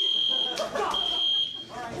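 School fire alarm sounding for a fire drill: a single high, steady tone coming in pulses of up to about a second with short gaps, then a longer pause near the end.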